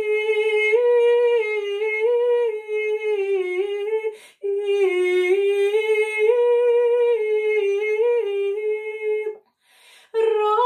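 A woman singing Znamenny chant in tone 4, solo and unaccompanied, in a narrow, stepwise melody. She breaks off briefly to breathe about four seconds in and again near the end.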